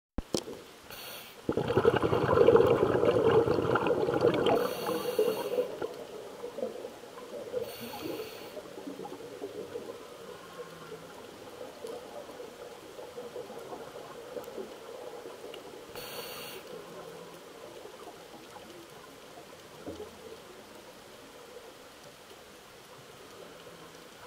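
Scuba regulator breathing underwater: a short hiss as the diver breathes in, then a loud rush of exhaled bubbles lasting about three seconds. More short breathing-in hisses follow a few times later, over a faint steady crackle.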